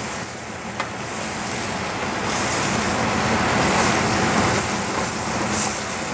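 Mushrooms sizzling steadily in a stainless steel frying pan, stirred with a wooden spatula, with a single light knock about a second in.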